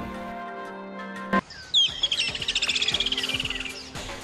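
Background music holding a chord that cuts off about a second and a half in, followed by a bird-tweet sound effect: a fast trill of chirps that falls slowly in pitch for about two seconds.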